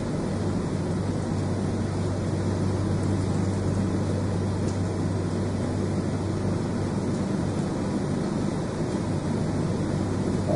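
Steady room noise: a constant low hum under an even hiss, with no distinct sounds standing out.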